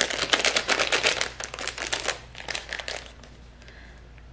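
Small clear plastic bag crinkling as it is pulled open by hand: dense crackling for about two seconds, a few softer crinkles after, then it dies away.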